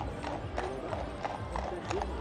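Horse's hooves clip-clopping on the road, about three clops a second, under a faint murmur of voices on a busy street.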